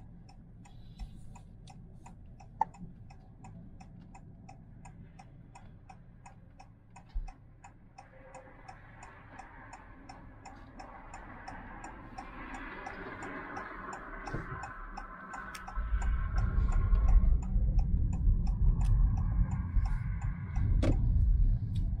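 Car turn-signal indicator ticking at an even tick-tock while waiting to turn right. Low engine and road noise grows loud about three quarters of the way in as the car pulls away.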